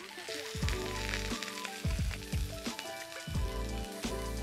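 Olive oil sizzling in a skillet around seared, flour-coated chicken breasts as they are lifted out with metal tongs, with light clicks of the tongs.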